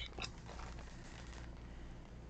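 Faint crinkling of a foil snack bag being turned over in the hands, a few light ticks and rustles in the first second and a half, over a low steady hum.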